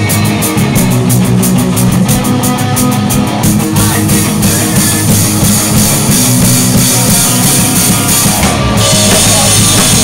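Pop-punk band playing loud live rock on drum kit and electric guitars, with a fast, driving drum beat; about nine seconds in, crashing cymbals wash over the top.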